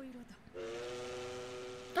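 A train whistle blowing one long, steady blast that starts about half a second in and stops just before the end.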